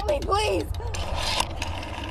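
A woman's voice, strained and distressed, in the first half second, over a steady low rumble from the trailer's soundtrack, with a few faint clicks after it.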